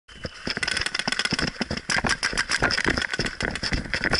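Paintball markers firing fast strings of shots, many sharp pops a second, without a break.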